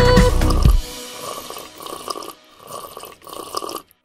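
A bright children's-song backing stops about a second in. Then comes a cartoon sound effect of drinks being slurped noisily through straws, in about three separate pulls.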